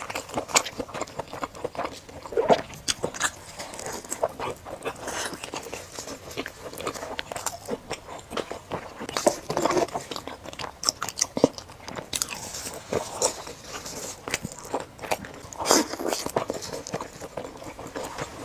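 Close-miked eating: chewing and biting fried chicken, meat and other fried food, with many short crackling clicks and an occasional louder bite.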